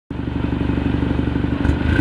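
BMW G30 530i's turbocharged 2.0-litre four-cylinder idling steadily through an Armytrix aftermarket exhaust with quad tips, its exhaust pulses running as an even, loud burble.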